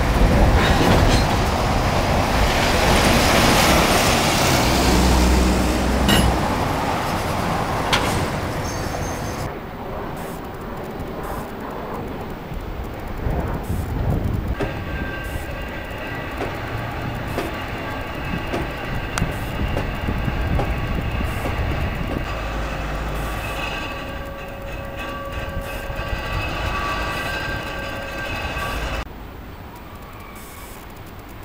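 EMD SW8 switcher locomotive and its train passing close, the diesel engine running and the cars rolling over the bridge. The passing is loudest in the first several seconds. From about halfway in, a steady high-pitched wheel squeal joins the rolling sound.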